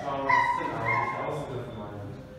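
A man talking to a group, his voice rising in pitch about a third of a second in.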